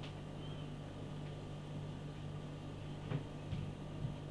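A man sipping beer from a glass in a quiet room: a steady low hum, with a few faint clicks from the lips and glass about three seconds in.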